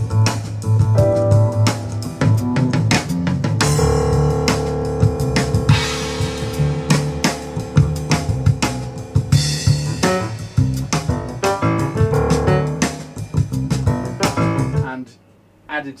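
Recorded music played over a pair of Vivid Audio GIYA G3 loudspeakers in a show demonstration room, with a steady run of drum hits. The music stops suddenly about fifteen seconds in.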